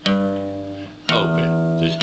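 Richwood acoustic guitar being played: a chord is struck and rings out, and is struck again about a second in.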